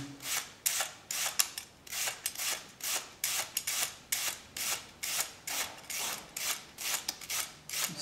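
Raw onion drawn over and over across the upturned steel blade of a Dinki-di vegetable peeler, each stroke shaving off a thin slice with a short crisp rasp, about two strokes a second.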